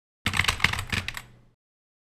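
Opening sound effect: a quick burst of sharp, clattering clicks, like typewriter keys, lasting about a second and fading out.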